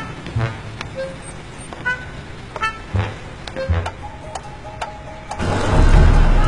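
Cartoon sound effects: slow, evenly spaced taps of a walking cane, each with a short ringing note, about one a second over the low hum of an idling bus. Near the end a loud rush of a vehicle sweeps in.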